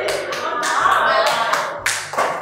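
A group of people clapping, with voices and music underneath.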